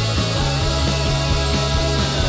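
Live rock band playing at full volume: drum kit keeping a steady beat under bass, electric guitars and keyboard.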